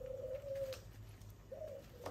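Faint, soft, low bird call: one long steady note fading out before the first second is over, and a short note near the end.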